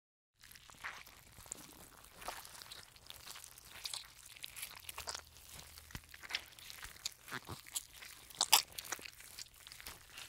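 Slime being squished and stretched by hand, giving irregular sticky clicks and crackles. The sound starts after a brief silent gap, and the loudest cluster of clicks comes about eight and a half seconds in.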